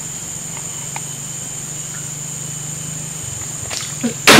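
Steady high-pitched insect drone of a tropical forest with a low steady hum beneath, and a couple of soft taps near the end.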